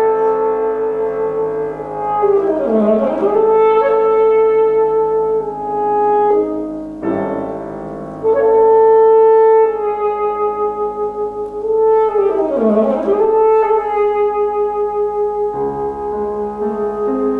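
Alto saxophone playing long held notes with piano accompaniment, in a live classical performance. A rapid run sweeps down and back up twice, about three seconds in and again about thirteen seconds in, and the last held note wavers with vibrato.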